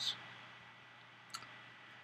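A pause in speech: faint room tone with a low steady hum, and a single short click a little past halfway.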